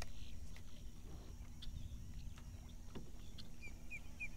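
Quiet low rumble of wind and water around a fishing kayak, with a faint steady hum from its running electric trolling motor, scattered faint ticks, and a few short high chirps near the end.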